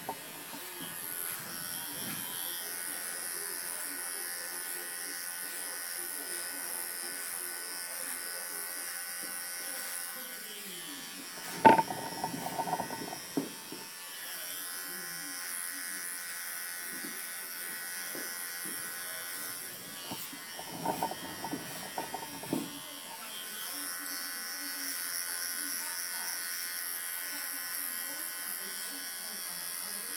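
Wahl electric hair clipper buzzing steadily as it cuts the short hair up the back of the neck and around the ear in a fade. A single sharp knock comes a little before halfway, and there are a few short, rough bursts about two-thirds of the way through.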